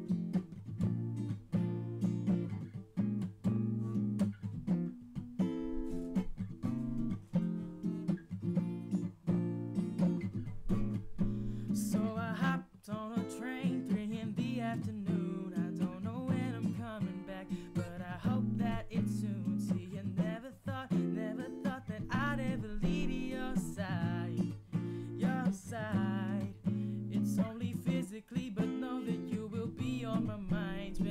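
Washburn acoustic guitar playing the song's intro chords, picked and strummed steadily. About twelve seconds in, a wordless voice joins over the guitar.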